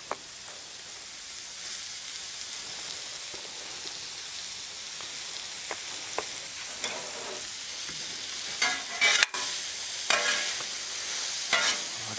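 Zucchini and yellow squash noodles sizzling in butter and olive oil on a hot Blackstone flat-top griddle, a steady high hiss with a few light clicks. In the last few seconds a metal spatula scrapes and stirs the noodles on the steel griddle, louder and rougher over the sizzle.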